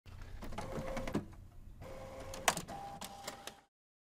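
Desktop printer running: motor whirs at two pitches broken by clicks, with one sharp click about two and a half seconds in. It stops just before the end.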